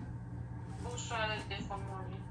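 A woman's voice, faint and thin, speaking briefly over a mobile phone's speaker about a second in, above a steady low hum.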